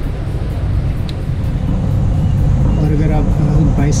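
A steady low rumble that gets a little louder partway through, with a voice talking over it in the second half.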